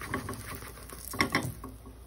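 Spatula working under a pancake in a buttered nonstick frying pan and flipping it: a few short scraping clicks, loudest a little past the middle, over a faint sizzle.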